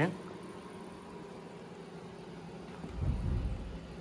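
Dell PowerEdge T620 server's cooling fans running steadily, a little loud because of its high-spec configuration with a large amount of memory. A brief low rumble comes about three seconds in.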